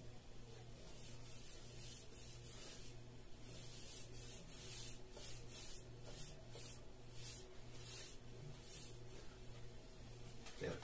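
Paintbrush stroking a fresh coat of paint onto a drywall board: a series of short, hissing brush strokes, faint at first and coming about twice a second from a few seconds in.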